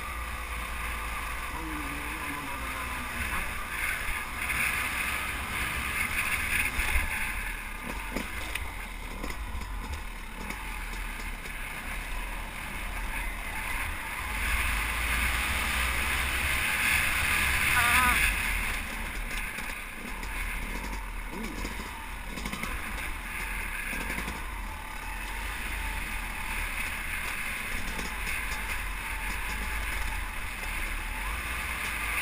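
Yamaha YZ250 two-stroke dirt bike engine running under way on a trail, heard from on board, its revs rising and falling with the throttle. It builds to its loudest about eighteen seconds in as the revs climb, then drops back.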